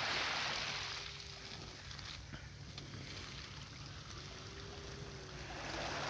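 Small waves lapping and washing softly on a sandy shore of a calm sea, a little louder in the first second, over a low rumble of wind on the microphone.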